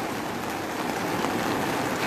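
Steady rain falling, a constant even hiss.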